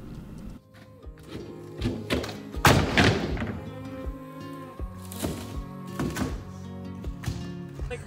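Heavy slat board wall panel being pulled off a wall: one loud thunk about three seconds in and several lighter knocks, over background music.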